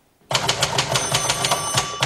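Manual typewriter typed fast, an even run of about ten key strikes a second that starts abruptly. About a second in, a bell-like ringing tone joins and lingers as the typing stops.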